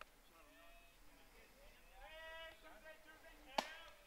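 Quiet outdoor ballfield ambience with faint, distant voices calling out twice, then one sharp smack near the end.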